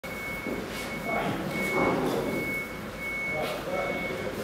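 A high electronic warning beep of one steady pitch, repeating about every three-quarters of a second with short gaps, over the echoing noise of a large hall.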